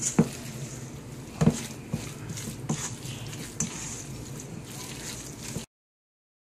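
Red silicone spatula stirring a wet salmon-burger mixture of breadcrumbs and chopped peppers in a stainless steel bowl: soft squishing with a few sharp knocks. The sound cuts off abruptly near the end.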